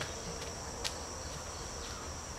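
Insects chirring in one steady high-pitched drone, with a few soft footsteps of sandals on a dirt path, the clearest just under a second in.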